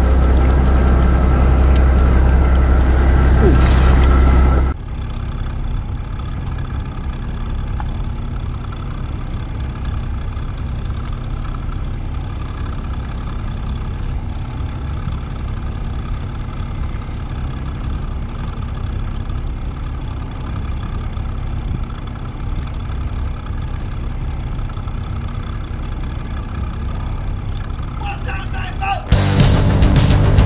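A boat engine idling, a steady low hum with no change in speed. About five seconds in, a louder, deeper hum cuts off abruptly and a quieter steady hum carries on.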